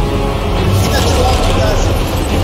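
Loud soundtrack of an animated monster fight: a heavy, steady low rumble with mixed sound effects layered over it.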